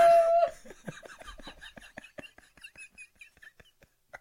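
A man's helpless laughter: a loud voiced laugh breaks off about half a second in and turns into a run of quiet, breathy gasps, several a second.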